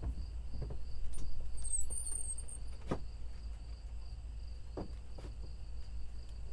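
Crickets chirping in steady, evenly repeating pulses, with a few footsteps and knocks on wooden porch boards and a brief high squeak about two seconds in.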